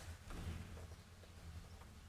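Quiet room tone with a steady low hum and a few faint, soft taps and handling noises.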